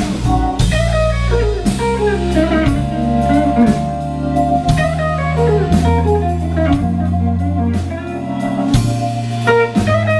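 Live blues band: an electric guitar plays a solo of single-note lines on a semi-hollow-body guitar, over electric bass and a drum kit with regular cymbal strikes.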